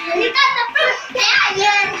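Young children's voices chanting and singing the words of an action song together, loud and close.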